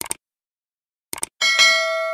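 Subscribe-animation sound effects: quick mouse clicks at the start and again about a second in, then a bright notification-bell ding that rings on and fades.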